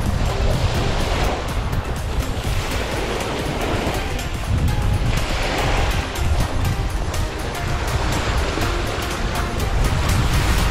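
Wind-driven lake waves breaking and washing onto a gravel shore, swelling in surges every few seconds, with wind rumbling on the microphone. Soft background music plays underneath.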